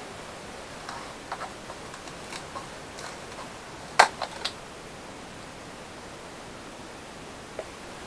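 A plastic motor-oil bottle being handled and opened, with a sharp click about four seconds in as the cap and its seal break, then two lighter clicks, over a steady low hiss of room tone.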